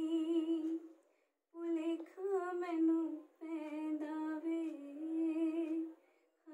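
A woman singing a slow melody unaccompanied, with a soft, humming quality, in three phrases separated by short pauses.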